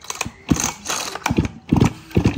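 Recoil starter cord of a Ryobi ES-300 two-stroke chainsaw pulled several times in quick succession, the engine turning over against compression without starting. It is a compression check, and the seller finds the compression good.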